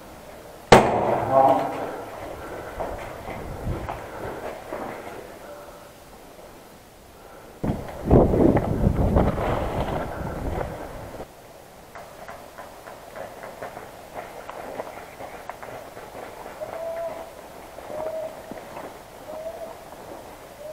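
Rustling and footsteps through tall grass and brush while moving quickly, loudest in a burst of a few seconds midway. A single sharp bang about a second in.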